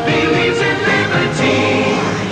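Advertising jingle sung by a choir over musical backing, with long held notes.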